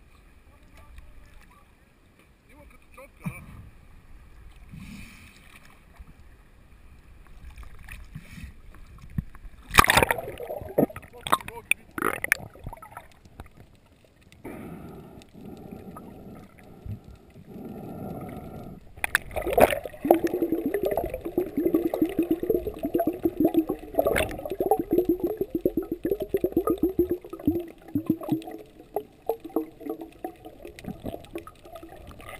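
Muffled water sounds from an action camera in its waterproof housing at the sea surface and then underwater: a loud sudden splash about ten seconds in, then a dense run of rapid bubbling pulses through the last third.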